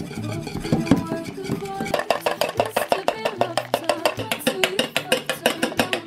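Wire whisk beating a whipped-cream mix in a glass bowl: rapid clicking and scraping of the wires against the glass, getting quicker and denser about two seconds in. Background music plays throughout.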